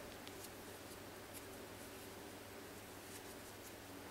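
Faint rustling and a few small ticks of yarn and a crochet hook being handled as half double crochet stitches are worked, over a steady low hum.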